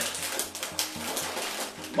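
A plastic snack bag crinkling and rustling as it is handled.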